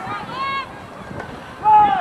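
Raised voices shouting out during a football play, with one call about half a second in and a louder, longer one near the end.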